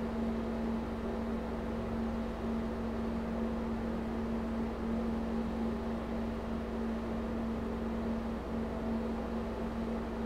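A steady low hum on one pitch over an even background hiss, unchanging throughout, with no notes being struck.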